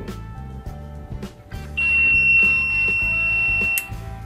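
A circuit-board buzzer gives one steady, high-pitched beep lasting about two seconds, signalling that the scanned fingerprint was accepted and the user's load switched on. Guitar music plays underneath.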